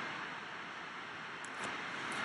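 Faint steady hiss of a low-quality microphone: room tone with no distinct sound events.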